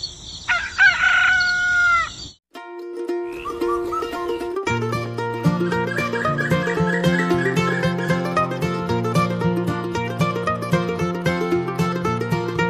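A rooster crowing once, about two seconds long, falling off at the end. After a short gap, background music begins with plucked string notes, and a fuller accompaniment with a bass line joins a couple of seconds later.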